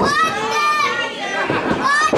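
Wrestling-show spectators shouting over one another, several high-pitched voices among them.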